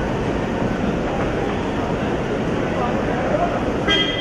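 Busy hubbub of several voices over a steady vehicle rumble around a waiting SUV. Near the end comes a short, sharp ringing clink.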